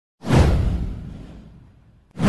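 A whoosh sound effect with a deep boom underneath, as used in intro animations. It starts suddenly a fraction of a second in, sweeps down in pitch, and fades away over about a second and a half.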